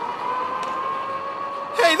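Small cart motor running with a steady whine that edges slightly up in pitch as the cart rolls forward.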